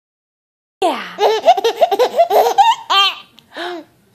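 A baby laughing: a fast run of high-pitched laughs starting about a second in and lasting about two seconds, then one shorter laugh near the end.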